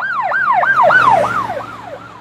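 Police siren in a fast yelp, its pitch sweeping up and down about three to four times a second, loudest about a second in and then fading away.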